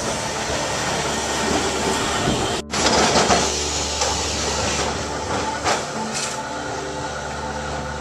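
Vintage electric trams running on street track: steel wheels rumbling on the rails under a steady motor hum, with two sharp clicks a little past the middle. The sound drops out for an instant about two and a half seconds in and comes back louder.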